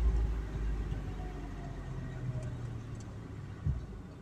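Car engine and road rumble heard from inside the cabin while driving slowly, a low rumble that eases off over the first second or so. There is a brief knock near the end.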